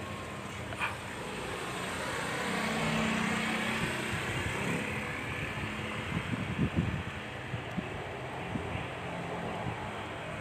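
Street traffic: a vehicle passes close by, swelling to its loudest about three seconds in and then fading, over a steady low hum.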